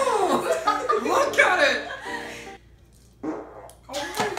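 People laughing: high, squealing laughs that rise and fall in pitch, dying away about two and a half seconds in, with one short burst near the end.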